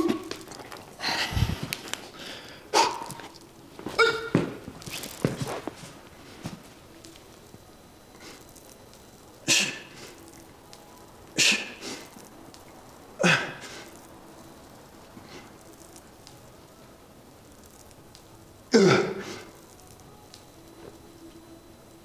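Forceful exertion breaths and grunts from a lifter doing a heavy seated dumbbell shoulder press. A cluster of breaths, a grunt and a low thump come as the dumbbells are hoisted into position. Then short, hard exhales come one per rep about every two seconds, with a longer pause before the last one as the set gets harder.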